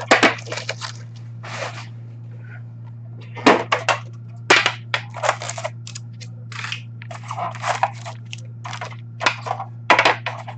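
Cardboard hockey card box being opened and its wrapped card packs pulled out and set down on a glass counter: a run of sharp crinkles, clicks and taps, loudest about three and a half and four and a half seconds in. A steady low hum runs underneath.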